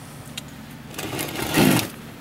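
Handling noise on a workbench: a rustling scrape that builds about a second in and stops just before the end as the opened golf cart charger and its parts are moved about, over a steady low hum.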